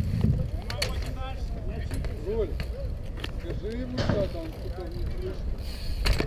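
BMX bike rolling on asphalt, with a steady low rumble and several sharp clicks and knocks from the bike, under distant voices.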